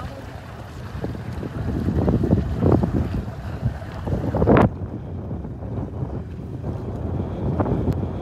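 Wind buffeting the microphone over lapping sea water. It swells in gusts through the middle and peaks about four and a half seconds in, then cuts off suddenly to a lower, steadier rush.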